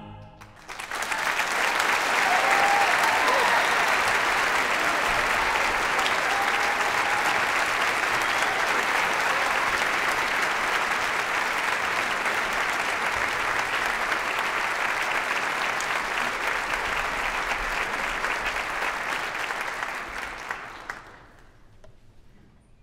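A large concert audience applauding. The applause swells about a second in, holds steady and dies away near the end.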